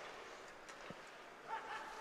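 Faint ice hockey rink sound during play: a low hiss of arena ambience with a few light clicks of sticks and skates on the ice, and a brief distant voice about one and a half seconds in.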